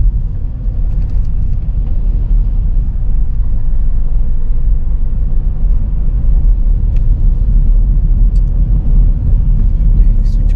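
Steady low rumble of a car on the move, heard from inside the cabin: engine and tyre noise.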